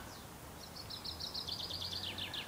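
A songbird singing a fast trill of short, high repeated notes, about ten a second, starting about half a second in and dropping in pitch near the end.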